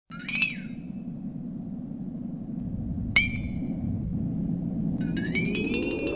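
Sound-design intro effects: three bright, glassy chime-like hits about a second in, at three seconds and near the end. The last one slides upward in pitch. They sit over a low drone that slowly grows louder.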